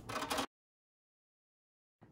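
Dead digital silence: after about half a second of sound the audio cuts off abruptly and stays completely silent, as at an edit in the recording.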